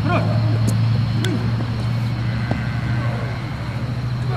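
Children's voices calling out over a steady low hum, with a few sharp knocks of a football being kicked.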